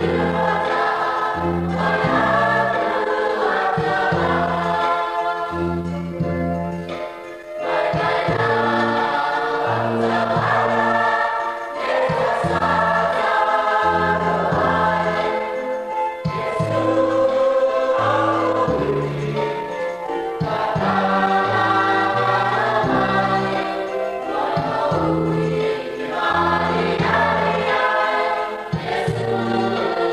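A youth choir singing a hymn in Niuean, over a low bass line that steps from note to note.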